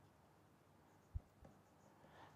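Near silence with faint stylus-on-tablet writing, and a soft low thump just over a second in followed by a fainter one shortly after.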